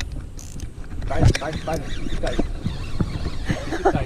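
Wind buffeting the microphone in a low, uneven rumble, with a few short voice sounds such as exclamations or laughs.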